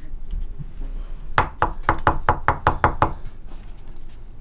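A quick run of about eight sharp knocks, roughly five a second, starting about a second and a half in and stopping about a second later.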